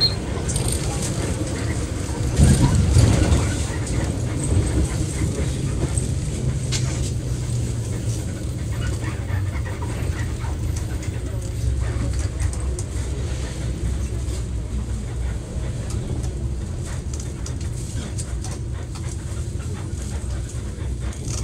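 Interior of a Zyle Daewoo BS106 NGV city bus: the bus's CNG engine running with a steady low drone under the cabin, louder for a moment about two to three seconds in.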